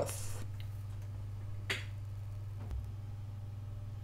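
Near-silent pause in narration: a steady low hum of room tone, with a single faint click a little under two seconds in.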